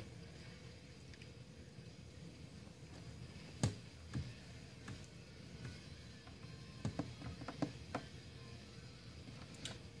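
Quiet room tone with a few faint clicks and taps from handling on the workbench, the sharpest about four seconds in and a small cluster near the end.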